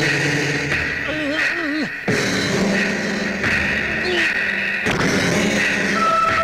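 Film soundtrack of sustained, eerie music over a man's strangled, wavering cries as he is choked by the throat, the longest cry about a second in.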